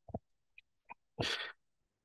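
A man's brief, sharp breath noise about a second in, close to the microphone, after a couple of faint mouth clicks.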